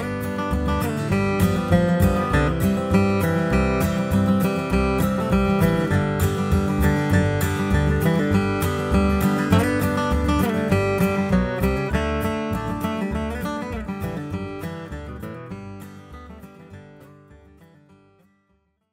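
Acoustic guitar music, strummed chords with bass notes in a bluegrass-style rhythm, fading out over the last few seconds.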